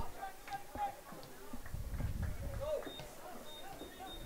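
Distant shouting voices of players and spectators around an outdoor soccer field, with a few sharp clicks and a low rumble about two seconds in.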